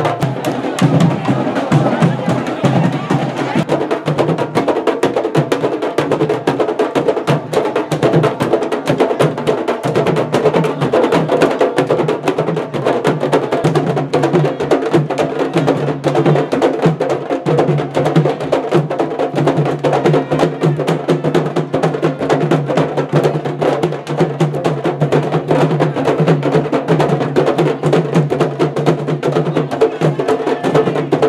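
Candombe drum troupe playing tambores (chico, repique and piano drums) in a fast, dense, continuous beat, with sharp stick strikes mixed in.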